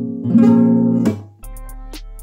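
An acoustic guitar with a capo, an E minor 7 chord strummed once about a third of a second in and left ringing. The chord cuts off abruptly just after a second, leaving a low steady hum and a click near the end.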